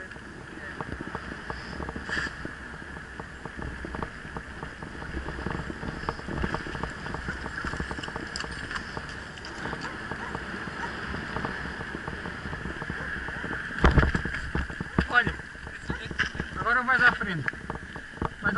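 Mountain bike rolling along a paved lane: steady road noise and rattling of the bike, with a loud knock about fourteen seconds in.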